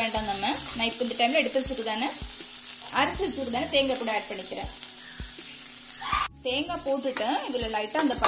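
A drumstick-leaf stir-fry sizzling in a stainless steel pan while it is stirred, with the ladle scraping and knocking against the pan. The sound drops out briefly about six seconds in.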